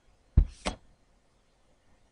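Two quick knocks about a third of a second apart, the first with a deep thud.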